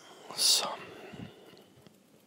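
A man's audible breath between phrases: one short, hissy intake about half a second in, then quiet.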